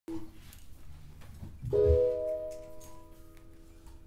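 A keyboard chord struck about a second and a half in and held, several notes sounding steadily together, with a low thud as it starts.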